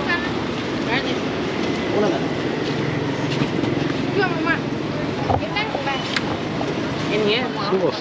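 A large coach bus's engine idling at the curb, a steady low hum, with people talking nearby over it.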